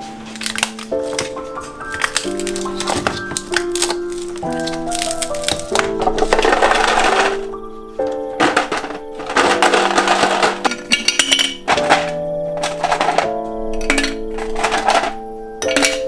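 Background music of sustained, changing chords. Over it, a plastic ice cube tray is twisted and the ice cubes crack loose and clatter into a plastic bin in several noisy spells about a second long, the loudest sounds here.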